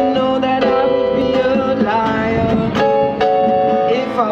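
Live Christmas band music: acoustic guitar playing under a melody of long held notes.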